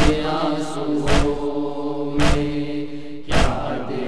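Noha lament: voices hold a long chanted note, with a sharp slap-like beat about once a second, the chest-beating (matam) rhythm that keeps time in a noha.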